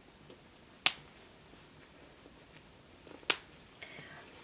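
Two sharp snaps about two and a half seconds apart, the first just under a second in, as hands handle and fasten a baby doll's clothing.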